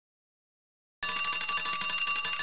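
An electric bell ringing continuously, its hammer striking the gong rapidly; it starts suddenly about halfway in, out of complete silence. It is heard clearly because the glass bell jar around it is still full of air.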